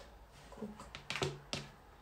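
Sticky slime being pressed and pulled apart by hand on a tabletop, giving a few soft clicks and pops as it comes away from the fingers and table.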